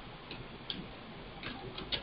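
Computer keyboard keys pressed one at a time: about five light, irregularly spaced keystroke clicks during slow typing.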